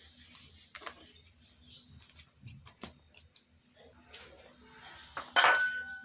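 Hands kneading soft, still-loose dough in a glass bowl: quiet handling noise with scattered light taps against the glass. Near the end comes a louder clink of a dish against the bowl that rings briefly.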